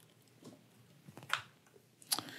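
Quiet room with faint handling sounds as a coiled HDMI cable and a camera rig are picked up on a desk, with one brief, sharper tick or scrape about a second and a half in.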